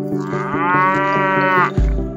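Background music with a steady plucked beat, over which a single long pitched call, rising at first and then holding, lasts about a second and a half. A loud low thud follows near the end.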